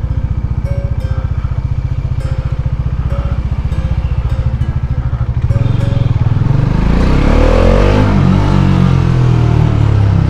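Kawasaki Z900's inline-four engine running at low revs as the bike rolls slowly, with a steady low pulse. About halfway through, the engine pulls harder, getting louder and rising in pitch, with more wind and road noise.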